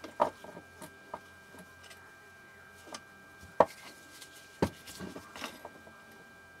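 Handling noise from an opened cordless screwdriver: scattered clicks and knocks of its plastic housing and battery cells being moved about. The three loudest knocks come just after the start, about three and a half seconds in, and just before five seconds.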